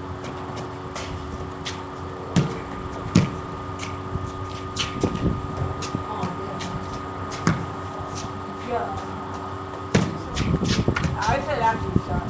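Irregular thuds and knocks of a small ball bouncing and being shot at a basketball hoop, a few every couple of seconds and busier near the end, with brief faint voices.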